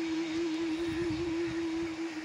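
A man singing, holding one long note with a slight waver at the end of a sung phrase.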